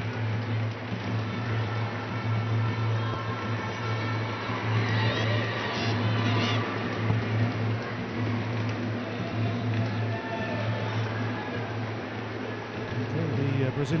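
Football stadium crowd noise: a steady murmur with scattered voices calling out, rising and falling, around the middle of the stretch.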